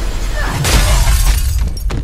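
Film fight sound effects: a loud smash with shattering, starting about half a second in and lasting nearly a second, over a deep low rumble, with a sharp hit just before the end.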